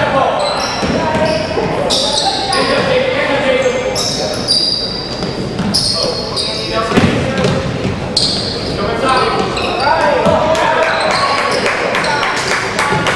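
A basketball bouncing and sneakers squeaking on a hardwood court, many short high squeaks scattered through, during a youth basketball game. Voices of players and onlookers carry through an echoing gym.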